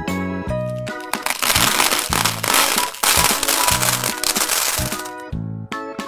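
Children's background music. From about a second in until shortly before the end, a dense crackling clatter plays over it: a sound effect of many small balls pouring into a glass.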